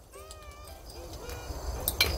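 Broken conch shell pieces rustling and clinking under gloved hands, with a sharp knock near the end, over short, high, gliding animal calls.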